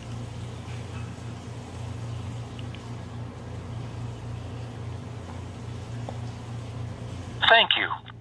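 A steady low hum with a faint hiss while a call waits on an automated phone line, then near the end an automated phone-banking voice starts, thin and narrow-sounding through the phone.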